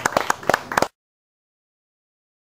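Applause from a small audience, with separate hand claps distinct, cut off abruptly about a second in, followed by silence.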